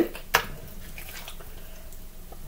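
Mayonnaise being scraped from a metal measuring cup into a saucepan with a spatula: one sharp knock of the utensils against the pan about a third of a second in, then faint soft squishing.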